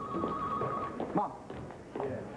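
Electronic telephone ringing with a warbling trill that stops about a second in, over background chatter of voices.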